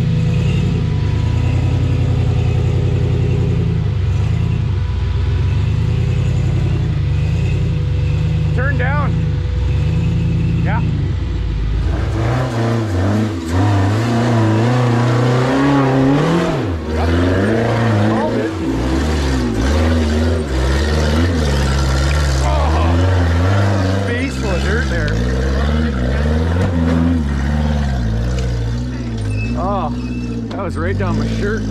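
Rock buggy engine pulling at low, steady revs on a steep climb. From about twelve seconds in it revs up and down unevenly as it works over the obstacle.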